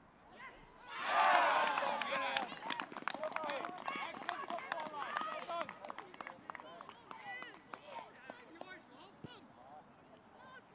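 Outdoor youth football pitch: excited cheering and shouting from young players and spectators as a goal goes in, starting suddenly about a second in. It is followed by clapping and scattered shouts that die down.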